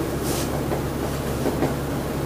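Steady low electrical hum with a constant hiss of room noise. About a quarter second in comes one brief scratchy stroke, typical of a marker on a whiteboard.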